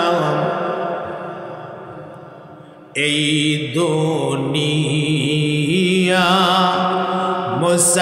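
A man's voice chanting a slow melodic tune through a PA microphone, holding long notes with wavering ornaments. One note fades away over the first three seconds, then a new loud held phrase starts abruptly about three seconds in.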